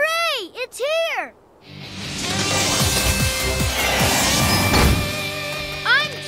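A child's excited shout, then a swelling rush of cartoon jet-engine noise as an animated robot plane comes in to land, with music underneath.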